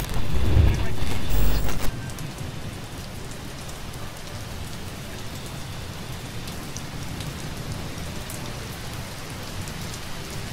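Steady rain ambience, opening with a loud low rumble that lasts about the first two seconds.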